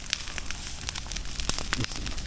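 Dry grass and fern litter burning, crackling with scattered, irregular sharp pops over a soft hiss.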